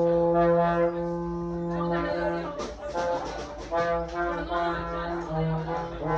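A low brass instrument, trombone-like, playing long held notes: one held for a couple of seconds, then after a short break more notes at a few different pitches.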